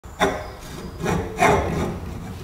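Rusty hand-cranked vegetable slicer being turned by its crank, its rusted iron parts grating and scraping in three rough, uneven strokes.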